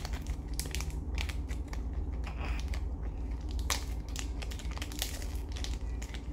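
Foil Pokémon booster pack wrapper crinkling and crackling irregularly as it is handled and worked open.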